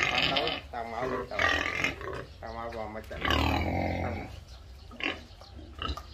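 Domestic pigs grunting and squealing in a series of short calls, the longest coming about three seconds in and falling in pitch over a low grunt.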